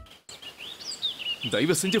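Small birds chirping over a faint outdoor hiss, then a man starts speaking about a second and a half in.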